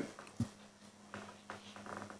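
Faint room tone in a meeting chamber during a pause: a steady low electrical hum, with a single brief knock about half a second in and a few faint small sounds after it.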